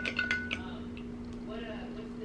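A plastic spoon clinking against a glass measuring cup while stirring a liquid, with a brief ringing from the glass in the first half second. After that only a steady low hum remains.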